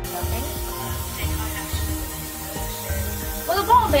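Aerosol hairspray hissing as it is sprayed onto hair, starting suddenly and running steadily, over background music with a steady beat.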